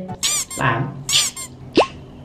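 Comic sound effects over light background music: two short, very high squeaks about a second apart, then a quick rising zip near the end.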